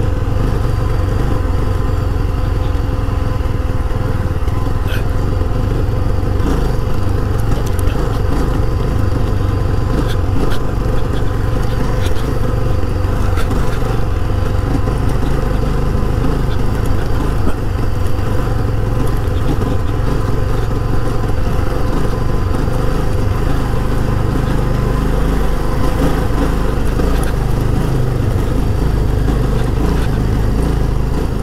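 Yezdi Scrambler's single-cylinder engine running steadily while the motorcycle is ridden, with wind rush over the microphone.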